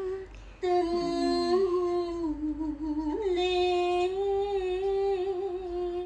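A woman's voice holding long sung notes in Vietnamese cải lương style, the pitch slowly wavering, with a brief break about half a second in and a step up in pitch about three seconds in.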